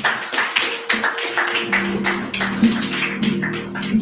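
Rhythmic hand clapping, about four claps a second, with sustained keyboard chords coming in about a second and a half in.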